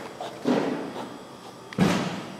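Medicine ball being thrown and caught during sit-up passes, with one sharp thump near the end as the ball hits hands and a softer sound about half a second in.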